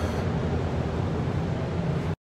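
Steady low rumble of parking-garage background noise, with a fainter hiss above it.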